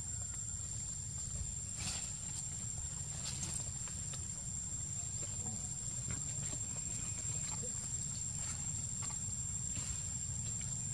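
Outdoor forest ambience: a steady low rumble under a constant thin high-pitched whine, with faint scattered ticks and rustles.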